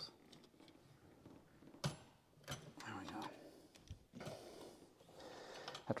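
Faint scattered clicks and scrapes of hand work on an old, tight rubber heater core hose being cut and worked loose from its fitting, with a faint muttered sound partway through.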